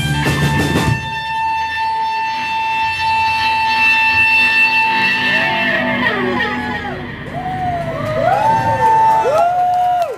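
Live rock band with guitars, bass and drums ending a song: the full band with drums stops about a second in, and a held chord and steady guitar feedback ring on. In the second half, wavering tones slide up and down over the fading chord.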